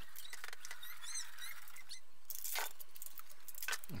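Pliers prying apart a plastic laptop battery casing: faint clicks, a short run of high squeaks about a second in, and a sharp crack of plastic about two and a half seconds in.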